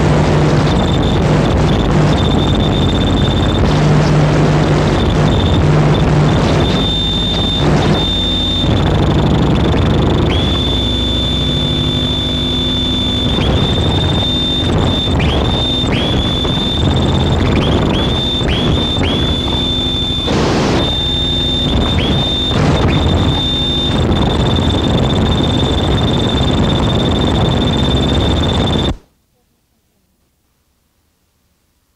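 Harsh noise music: a dense wall of distorted noise under a steady high whine that, in the second half, keeps dipping in pitch and swooping back up. It cuts off suddenly about a second before the end.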